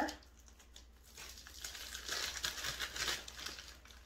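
A bag of light brown sugar being handled and opened, its packaging crinkling and rustling; the crinkling starts about a second in and carries on to the end.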